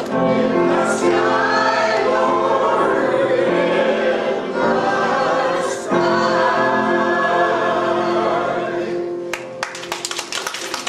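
Choir singing held chords, stopping about nine seconds in, with a few sharp clicks or claps starting near the end.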